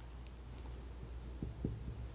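Faint sound of a marker pen writing on a whiteboard, with a couple of soft taps about one and a half seconds in, over a low steady room hum.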